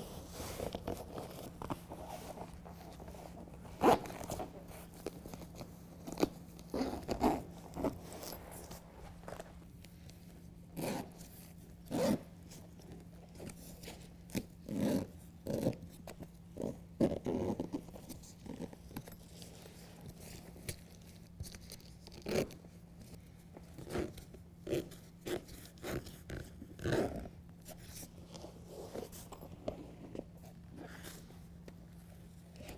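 Heavy-duty industrial-grade zipper on a BedRug Impact bed liner being pulled along in short, irregular bursts, mixed with the scraping and rustling of the stiff liner pieces being handled. A faint steady hum runs underneath.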